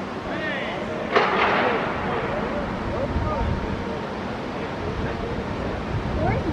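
Faint, distant voices of a football team and its coaches at practice in an open stadium, over a steady background hiss. About a second in there is a sudden short burst of noise.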